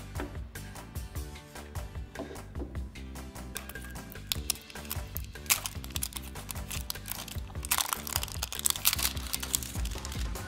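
Background music, and from about halfway in, the crackling crinkle of a thin plastic shrink-wrap label being peeled off a small hard plastic toy capsule, loudest near the end.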